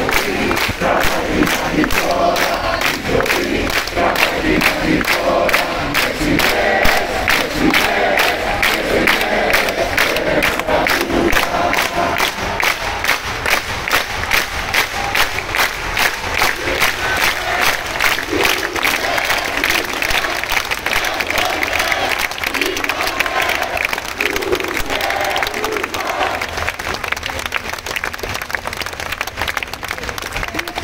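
A large crowd clapping together in a steady rhythm, about two to three claps a second, while many voices chant along; the voices are strongest in the first dozen seconds.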